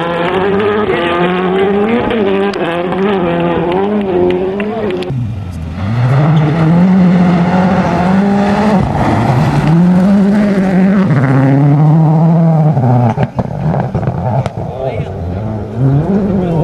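World Rally Car engines at full effort on gravel stages: a car's engine note wavers up and down as it is driven through a corner, then, after a cut about five seconds in, a Ford Focus RS WRC's turbocharged four-cylinder accelerates hard, its pitch climbing and dropping back at each upshift. A few sharp cracks sound near the end.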